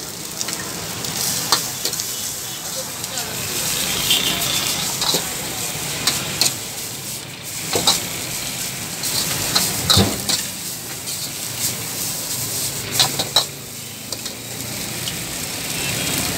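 Boiled rice and vegetables sizzling in a hot steel wok with a steady frying hiss, stirred and tossed with a long metal ladle that scrapes and clinks against the wok in scattered sharp knocks.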